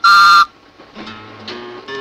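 A postman's whistle toots once, about half a second long: the read-along record's signal to turn the page. Quiet guitar music follows.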